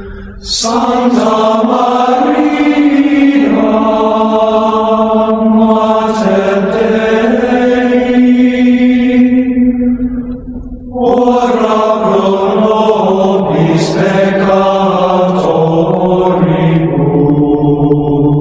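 Voices singing Gregorian chant, a slow stepwise melody in two long phrases with a short breath between them about ten seconds in.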